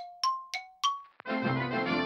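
An edited-in jingle: four quick bell-like dings alternating between a lower and a higher note, each ringing out briefly. Just after a second in they stop, and cheerful music with brass comes in.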